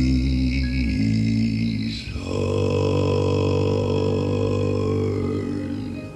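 Male gospel vocal group holding long sustained notes in harmony over a deep bass note, the song's drawn-out closing phrase: one held chord changes to a second about two seconds in, which is held until it fades near the end.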